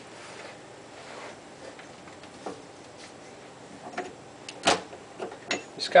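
Quiet handling noises under a kitchen sink around a garbage disposal and its drain fittings: a few small clicks, then one sharp knock a little before the end.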